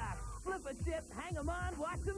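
Excited voices from a TV commercial played off an old VHS tape, over a steady low mains hum and a steady high-pitched squeal.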